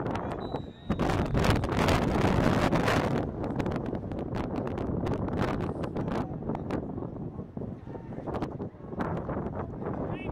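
Wind buffeting the microphone, heaviest about a second to three seconds in, over indistinct voices from the crowd.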